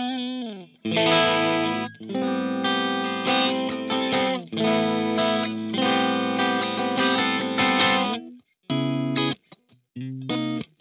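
Ibanez SA360NQM electric guitar played clean, without effects, through a Laney Ironheart amp on the split bridge and middle pickup setting. It opens with notes falling in pitch, then rings with strummed chords. These break off briefly twice and stop shortly after eight seconds, followed by one short chord.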